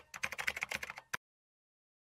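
Rapid keyboard-typing clicks, a sound effect for on-screen text being typed out, stopping suddenly about a second in.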